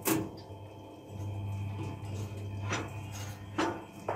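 Multi-fuel boiler's feed auger running: a steady low motor hum, with a sharp click at the start and a couple of sharp ticks near the end as pellets and corn kernels drop onto the metal grate of the burn pot.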